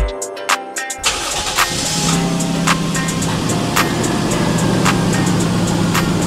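Toyota Crown's 2.5-litre 1JZ inline-six engine cranking and catching about a second in, then idling steadily.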